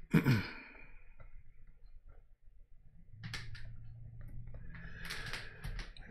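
A man's short, falling sigh-like "I" at the start. After a quiet pause, faint scattered clicks and rubbing from about three seconds in.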